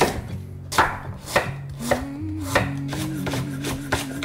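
Kitchen knife chopping vegetables on a bamboo cutting board, sharp strikes of the blade on the wood about every half second to second, seven or so in all. Soft background music runs underneath.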